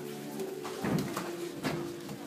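Two dull impacts from Muay Thai sparring, about a second in and again shortly after, over steady background music.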